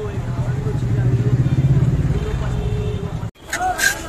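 A low vehicle-engine rumble with street voices, swelling and loudest in the middle. After an abrupt cut near the end, a block of ice is scraped in quick strokes across a hand ice-shaving blade.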